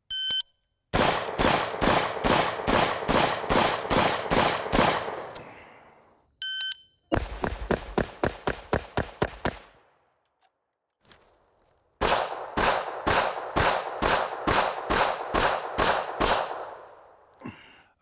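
A shot-timer beep, then an AR-15-style carbine fires ten rapid shots over about four seconds. A second beep follows, then ten quicker carbine shots, a pause of about two seconds for the transition to the pistol, and ten pistol shots in a steady string.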